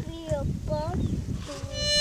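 Harmonica playing a short blues phrase: a few brief bent notes that slide up in pitch, then a bright, full held note near the end.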